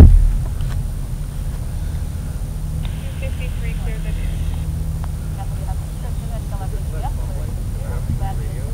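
A loud, short thump right at the start, then a steady low rumble with faint, distant voices.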